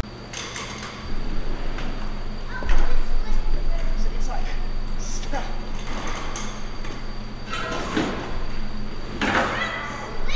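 A combine's new feeder house chain, a roller chain with steel slat bars, being hauled by rope across a concrete floor and into the feeder house: a continuous scraping and rattling with scattered clicks. Voices can be heard faintly underneath.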